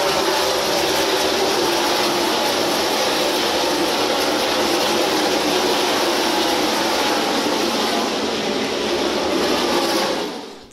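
NASCAR Xfinity Series stock cars racing past at full speed: a loud, continuous V8 roar from the pack, with several engine notes falling in pitch as cars go by.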